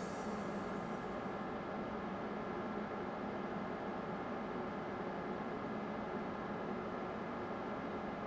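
A steady low hum and hiss of background noise, even throughout, with no distinct knocks or splashes.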